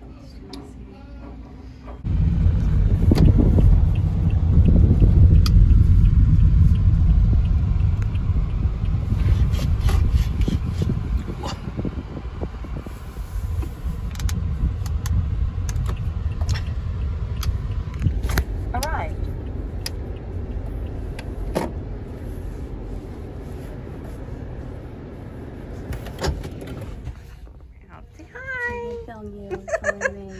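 Low rumble of a car on the move, heard from inside the cabin. It starts suddenly about two seconds in and grows gradually quieter, with a few light clicks. Near the end it gives way to voices.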